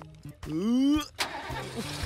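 Cartoon pickup truck's engine revving up once in a short rising note, followed by a single thud and then a low steady idle.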